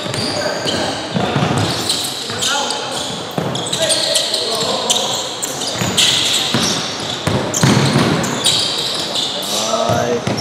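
Basketball game in a large gym hall: the ball bouncing on the hardwood court and players' footsteps, mixed with voices calling out.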